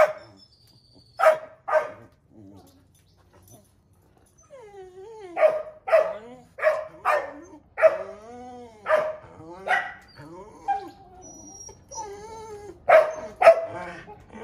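Australian cattle dog (blue heeler) barking in sharp, repeated barks, with whining and yelps in between. The barks come in runs: a few at the start, a lull about two to four seconds in, a long run of barks mixed with whines, and two more barks near the end.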